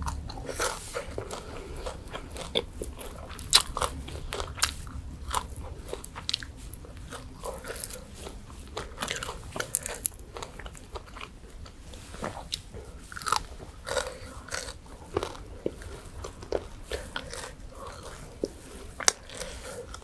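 A person chewing and biting crunchy food close to the microphone: irregular sharp crunches and mouth sounds, in the manner of mukbang eating.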